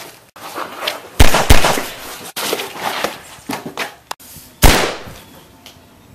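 Sudden loud bangs of a staged fight: two hits close together a little over a second in, smaller knocks and scuffling between, and another loud bang near the end.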